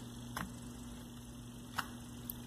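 Two short clicks about a second and a half apart, the second louder, as the magnetic rotor of a brushless RC motor is seated into its metal can, over a faint steady electrical hum.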